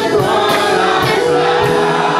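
Gospel song in church: a man leads the singing into a microphone, with many voices joining, over keyboard and band accompaniment with a steady beat.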